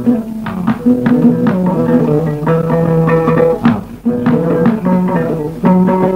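Instrumental music on a plucked string instrument: a run of sharply plucked notes over a repeating lower line.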